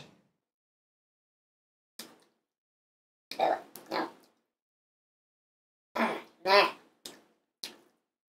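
A man eating a hot wing makes a few short mouth and vocal sounds. There is one small burst about two seconds in, a pair about three to four seconds in, and a pair about six seconds in, followed by two small ones near the end.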